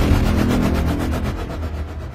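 Low rumbling tail of a deep cinematic boom hit in an animated logo sting, fading out steadily.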